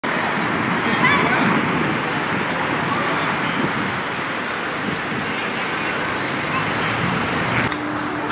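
Outdoor city ambience: a steady wash of traffic noise with indistinct voices in it. Near the end a click, after which a low steady hum sets in.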